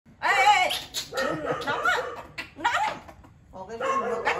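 A baby monkey giving a run of high-pitched cries, several short calls that bend up and down in pitch, with a short pause near the end.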